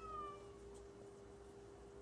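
A faint, short high-pitched call with a few overtones, falling slightly in pitch and ending about half a second in. A steady low hum runs under it.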